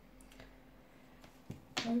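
Tarot cards being handled and laid down on a cloth-covered table: a few faint clicks, then sharper card snaps about a second and a half in, followed by a woman's voice starting right at the end.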